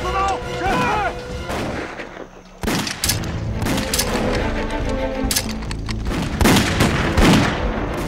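Film battle sound effects: rifle and machine-gun fire, many shots in quick, irregular succession starting about two and a half seconds in, over a background music score.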